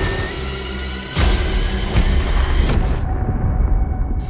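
Dramatic orchestral film score with strings over a heavy low bass. A loud surge of deep booming hits comes in about a second in, and the brighter upper sound falls away near the end.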